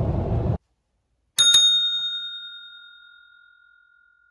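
A dome-topped push service bell is struck once about a second and a half in, giving a bright ding that rings out and fades over about two seconds. Before it, car cabin road noise cuts off abruptly in the first half-second.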